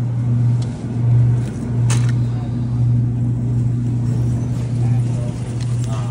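Steady low hum of a supermarket refrigerated display case, with a sharp click about two seconds in and faint voices in the background.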